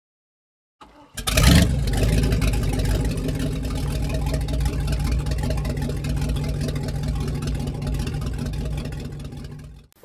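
An engine starts with a sudden burst about a second in, then runs steadily at a low, even pitch, fading out just before the end.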